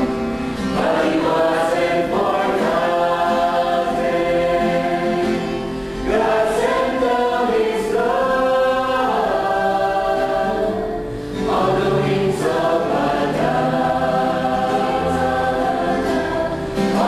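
A church choir of women and men singing a sacred song, in long held phrases with short breaks about six and eleven seconds in.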